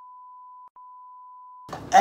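A steady, high single-pitch beep: the test tone played with TV colour bars. It breaks off very briefly under a second in, then cuts out near the end as a man starts talking.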